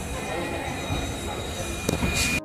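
Passenger train running over the rails, heard from inside the coach at an open barred window: a steady rumble with thin, high wheel squeal above it and a sharp click near the end.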